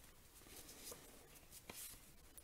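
Faint scratching of a pen writing on a small paper card, with a light click near the end; otherwise near silence.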